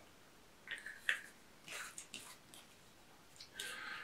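Plastic mustard squeeze tubes and their screw caps being handled: a few faint clicks and short rustles spread through, with a longer rustle near the end.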